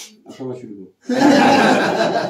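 A voice speaks a few words, then from about a second in several people laugh loudly together at a joke.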